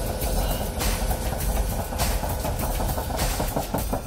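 A large machine running: a steady low rumble with a faint hum tone over it, the sound of a sci-fi laboratory apparatus powering up.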